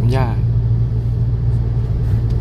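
Steady low rumble of a car's engine and tyres heard from inside the cabin while it drives along at an even speed.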